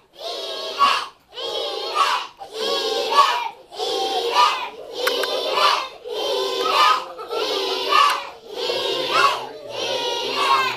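A classroom of young children chanting in unison, "Eat it!", over and over at about one chant a second.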